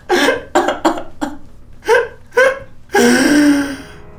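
A person's voice in short, separate, hiccup-like gasping bursts, then one longer drawn-out vocal cry about three seconds in.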